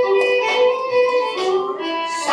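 Scottish country dance music, its melody played in long held notes that change pitch every half second or so.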